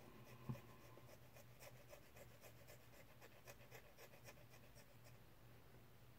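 Faint, short scratching strokes of a small hobby file on a plastic miniature part, several strokes a second, with one soft knock about half a second in.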